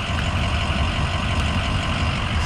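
Ford F-350's 6.0-litre turbo-diesel V8 idling steadily, heard from inside the cab.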